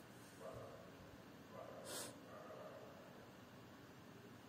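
Near silence: faint room tone, with a soft breath or sniff about two seconds in.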